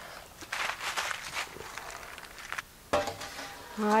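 Aluminium foil crinkling as it is pressed and crimped down around the rim of a baking dish, in a series of short rustles. A single knock comes just before the end.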